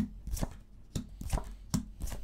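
Lenormand cards being dealt one at a time onto a wooden tabletop: about five short, sharp taps and slaps, roughly two or three a second, as each card is laid down.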